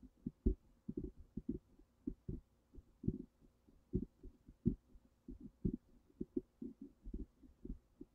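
Irregular low thumps on a call-in phone line, several a second, over a faint steady hum, while the caller's line has gone quiet.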